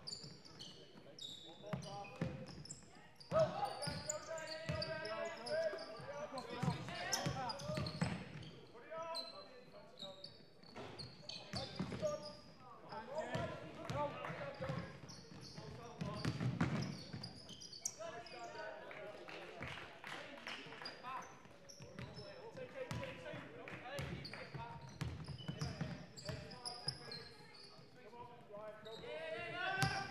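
A basketball bouncing on a wooden court amid players' and spectators' shouts and calls, all echoing in a large sports hall.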